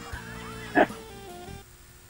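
Soft background music with steady held notes stepping down in pitch, and one short sharp sound just under a second in.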